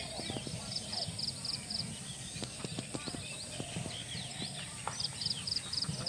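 Birds calling in open countryside. One bird gives a quick series of high, evenly spaced chirps about a second in and again near the end, among other short calls.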